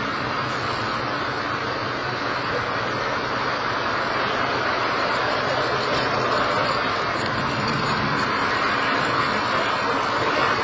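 Distant rumble of a Firefly Alpha rocket climbing after launch, a steady roar that grows slowly louder.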